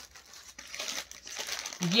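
Crisp organza suit fabric rustling and crinkling as the folded suit is handled by hand.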